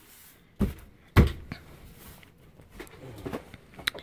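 Two sharp knocks about half a second apart, then quieter scraping and tapping, as an RV bench frame is handled and fitted into place.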